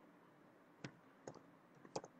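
A few faint computer keyboard keystroke clicks, spaced out in the second half, as code is typed.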